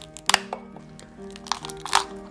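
Shell of a soy-marinated raw crab (ganjang-gejang) cracking and crunching as its top shell is pried open by hand: a few sharp cracks, the loudest about a third of a second in and again at the end, over soft background music.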